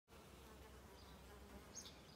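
Faint, steady buzzing of bees and bumblebees flying around the open blossoms of a wild rose bush.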